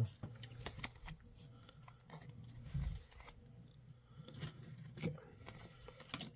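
Faint rustling and scattered clicks of a stack of Score football trading cards being slid apart and flipped through by hand, with one soft thump a little before the middle.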